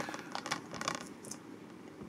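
A plastic Blu-ray case being turned over in the hands: a few light clicks and scrapes of plastic.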